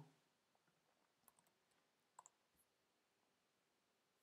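Near silence: room tone with a few faint clicks, three in quick succession about a second and a half in and one more just after two seconds.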